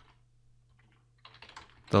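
Computer keyboard typing: a short run of quiet keystrokes in the second half, after about a second of near silence.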